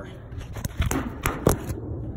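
Handling noise from a phone: a few sharp clicks and knocks, about five in a second, with rubbing as a gloved hand grips and moves the phone close to its microphone.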